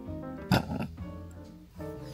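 A small poodle makes one short vocal sound about half a second in, over background music.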